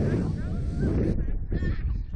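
Riders' short, gliding shrieks over heavy wind rumble on the microphone as the slingshot ride flings them through the air.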